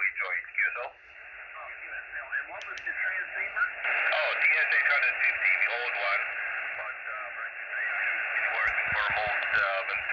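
Single-sideband voice of a distant amateur station on the 20-metre band, coming through the Xiegu X6100 transceiver's small speaker. The speech is thin and tinny over band hiss; it sinks into the noise about a second in, then comes back up and grows stronger.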